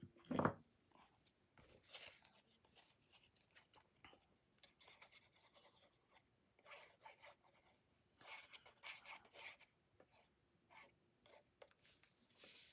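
Faint rustling and light taps of a cardstock panel being handled and moved about on a craft mat, with scattered soft clicks and a slightly busier patch of rustling near the end.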